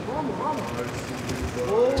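Speech: voices talking, faint at first and louder near the end.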